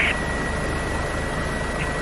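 Steady helicopter engine and rotor noise heard through the crew's intercom microphone between radio calls, with a thin steady high tone running through it.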